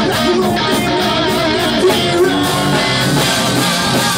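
Live hard rock band playing loudly, led by electric guitar over bass and drums.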